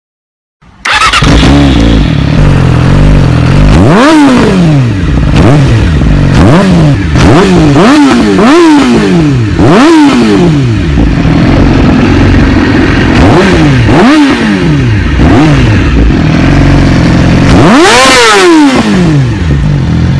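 Yamaha R6 inline-four with an Akrapovič titanium exhaust, revved repeatedly in short blips that rise and fall quickly. It starts about a second in, and its highest rev comes near the end.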